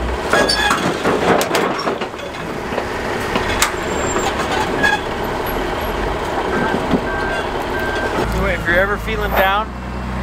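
Heavy diesel engine running, with occasional sharp clanks over it and people's voices near the end.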